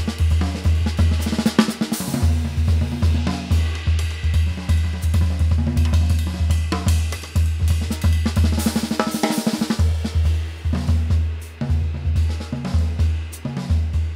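Gretsch Catalina Club mahogany drum kit, tuned high, played with sticks: a busy run of snare, tom and bass drum strokes under ride and hi-hat cymbals.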